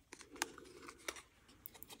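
Faint handling of a die-cut cardstock tag: a few light clicks and soft rustles of card against fingers.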